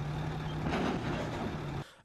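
Heavy military vehicle engine running steadily with a low hum. It cuts off abruptly near the end.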